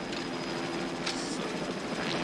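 Helicopter engine and rotor noise from the film's soundtrack, a steady din.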